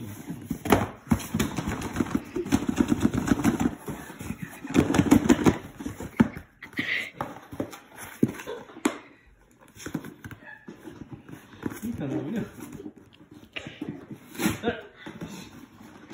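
Cardboard rubbing and scraping as a boxed fan is worked out of its outer cardboard shipping box, in rapid scratchy bursts, loudest in the first few seconds. A soft, wordless voice murmurs now and then.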